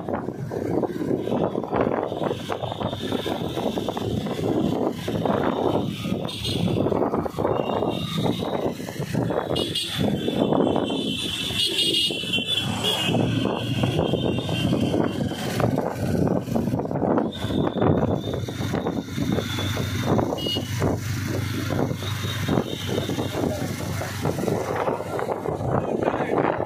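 A motorcycle riding along at a steady pace: engine and road noise, loud and continuous, with a thin high whine that comes and goes.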